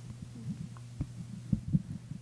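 Steady low electrical hum from the microphone sound system, with three soft, short low thumps: one about a second in, then two close together around a second and a half.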